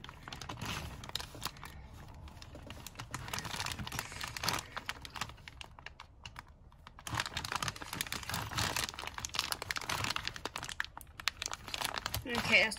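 Clear plastic bag full of Lego bricks crinkling and rustling as fingers pinch and pull at it to get it open, with a fast run of small crackles and clicks. It eases off briefly about halfway through, then gets busier again.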